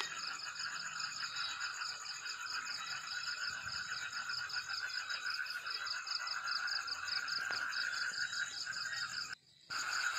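Steady night chorus of calling frogs and insects: fast, even pulsing trills at several pitches, layered over each other. It drops out for a moment near the end.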